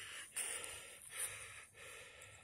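Faint footsteps crunching on dry ground litter of twigs and dead plant stems, slow, a little under one step a second.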